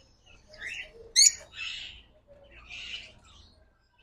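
Small aviary birds chirping: one sharp, loud call just over a second in, with a few softer chirps before and after it.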